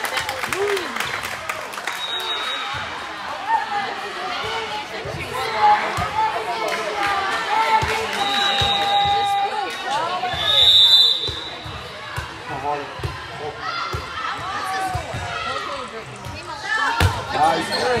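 A volleyball bouncing and smacking on a hard sports-court floor in a large gym, over the steady chatter of players and spectators. A few short shrill tones cut through about two seconds in and again around the middle.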